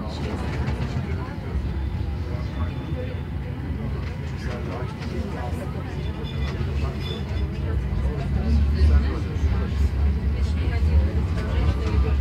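Tram running, heard from inside the car: a steady low rumble that grows louder about eight seconds in, with passengers' voices over it.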